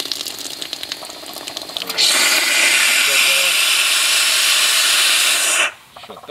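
Penberthy 328AA live steam injector on a vertical firetube boiler, its water supply run dry so it sucks air: a rapid crackling sputter for about two seconds, then a loud steady hiss of steam blowing out as it loses its prime. The hiss stops abruptly just before the end.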